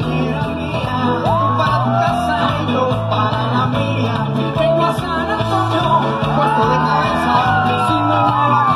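Live Latin pop band playing loud through a concert sound system, caught from the crowd: a steady bass and drum groove with a lead melody line bending up and down above it.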